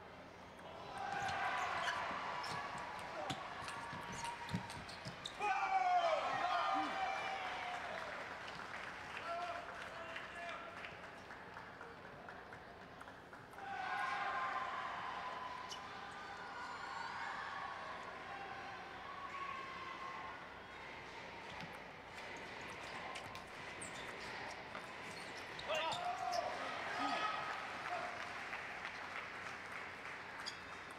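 Table tennis ball clicking off bats and the table in short doubles rallies, with voices shouting and cheering between points.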